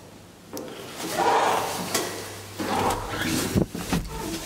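Elevator door sliding along its track: a rattling rumble about a second in, then several sharp clicks and knocks, over a low steady hum that sets in partway through.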